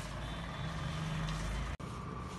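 A motor vehicle's engine running with a steady low hum. The sound drops out sharply for an instant near the end.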